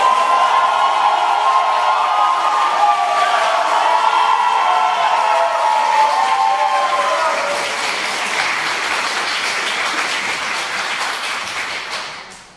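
Audience applauding, with several voices calling out and cheering over the first seven seconds or so; the clapping eases off near the end.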